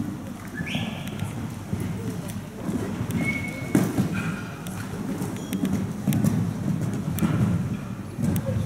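A horse cantering on an indoor arena's sand footing, with dull hoofbeat thuds, a sharp knock about halfway through, and indistinct voices in the background.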